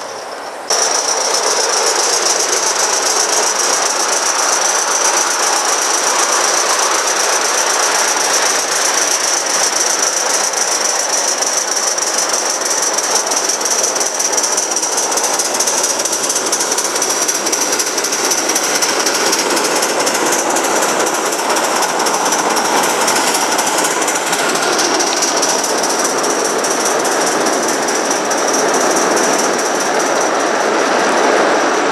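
A large-scale garden model train running along its track: a steady rattle of many coach wheels on the rails, with a high, steady whine over it. It starts abruptly just under a second in.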